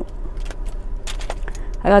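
Small metal keychain rings and clasps on bag charms clinking and jangling a few times as a hand picks through them.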